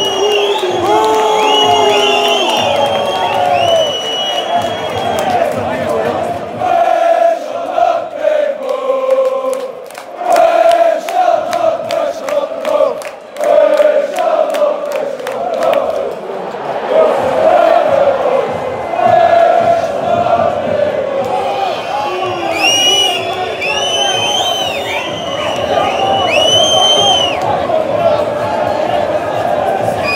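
A large football crowd chanting in unison, with rhythmic hand clapping through the middle stretch. High, shrill whistle-like tones come in at the start and again near the end.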